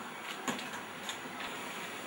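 Quiet room tone, a steady low hiss, with one brief faint knock about half a second in.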